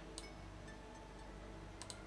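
Faint computer mouse clicks: one about a fifth of a second in and two quick ones near the end, over a low steady hum.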